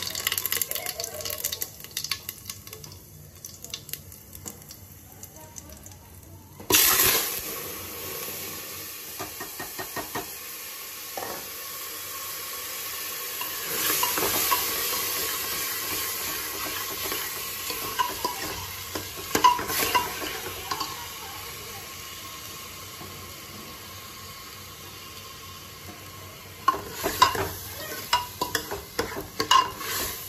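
Rice frying and being stirred in hot oil in an aluminium pressure cooker. A sudden loud sizzle about seven seconds in is followed by a steady sizzle, with a metal spoon scraping and clinking against the pot, more clatter near the end.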